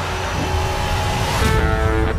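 Film trailer sound design and score: a heavy low rumbling swell, cut by a sharp hit about one and a half seconds in, after which sustained musical notes come in.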